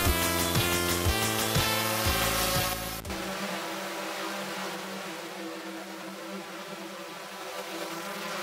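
Electronic music with a steady beat for about three seconds, then cutting off abruptly. A compact quadcopter drone then hovers with a steady buzzing propeller hum.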